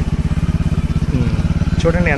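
A small engine running steadily with a fast, even pulse.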